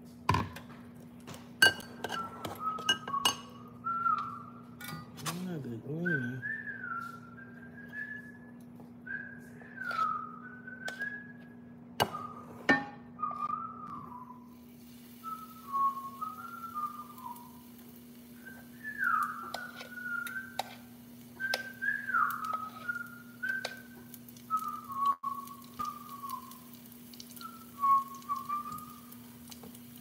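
A person whistling a tune in short, wavering phrases, with the clinks of a metal whisk and spoon against a glass mixing bowl as batter is mixed.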